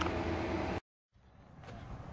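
Air conditioner running with a steady hum in a small room. The hum cuts off suddenly a little under a second in, followed by a brief dead silence and then faint outdoor ambience.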